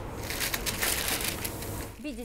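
Thin tissue paper rustling and crinkling as the sheets are handled and shifted on the table: a dense, crackly rustle that fades near the end.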